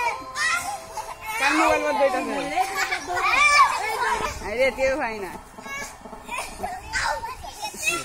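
Children at play: many young voices shouting and calling out over one another.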